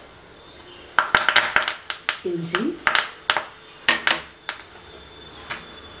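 Metal utensils clinking and scraping against steel pans and a small steel plate in a quick irregular run, starting about a second in and stopping about four and a half seconds in.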